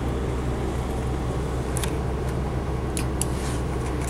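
Cummins ISL turbo-diesel engine idling, a steady low hum heard from inside the motorhome's cab, with a few faint clicks.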